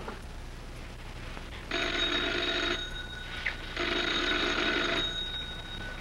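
Telephone bell ringing twice, each ring about a second long with about a second between them, over the steady hiss and hum of an old film soundtrack. The phone is answered just after.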